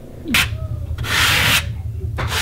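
A notched trowel scraping AcrylPro ceramic tile adhesive across a wall, combing it into ridges. There is a short scrape near the start, then one long stroke about a second in.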